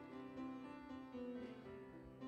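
Quiet piano music: a slow melody of held notes over lower sustained notes.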